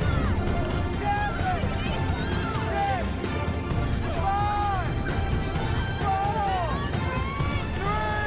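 Several people shouting over a tense music score, their voices rising and falling in loud calls about once a second.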